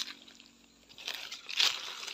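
Rustling and crunching in dry leaf litter, starting about a second in and loudest about one and a half seconds in, after a single click at the start.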